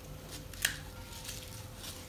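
Folded paper origami modules being handled and turned over on a wooden table: soft paper rustling with a single sharper tap or click a little over half a second in.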